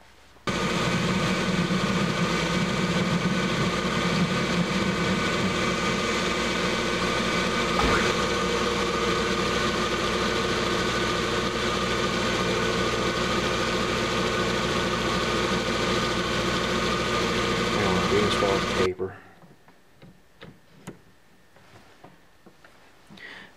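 Small belt-driven metal lathe running steadily, its motor and drive giving a steady hum with fixed tones, while a center drill in the tailstock drill chuck is fed into a spinning bar of hot-rolled steel. It starts abruptly just after the beginning, with a single click partway through, and cuts off about three seconds before the end.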